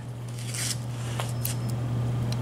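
A few faint clicks and light scrapes of small washers and a bolt being handled and fitted onto a carburetor's accelerator pump cam, over a steady low hum.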